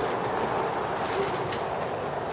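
Street ambience: a steady wash of noise with a few faint clicks.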